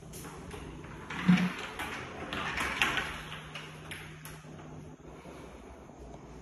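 A bifold closet door pulled open: a dull thump about a second in, then about two seconds of rattling and clicking as the panels fold.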